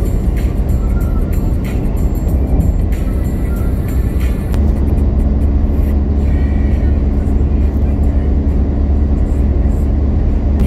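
Car cabin noise at motorway speed: a steady low rumble of tyres and engine, a little louder from about halfway, with music playing alongside.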